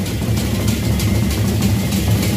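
Gendang beleq ensemble playing: large Sasak barrel drums beaten with sticks in a dense, steady rhythm. Deep drum tones sound under fast, sharp strokes.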